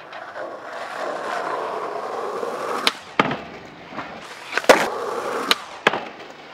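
Skateboard wheels rolling on pavement, building up for about three seconds, then a run of sharp wooden clacks as the board is popped and slapped onto a metal handrail for a front board slide.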